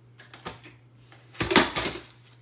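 Paper craft supplies being handled and rustled: a light tap about half a second in, then a brief, loud clatter of rapid clicks and paper rustle near the end, as a spiral-bound sticker book is picked up.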